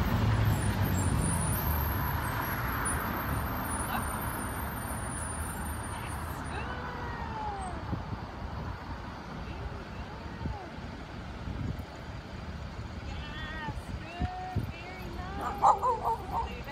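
Outdoor city street ambience: a steady rumble of traffic that fades over the first few seconds, with faint distant voices and a few sharper sounds near the end.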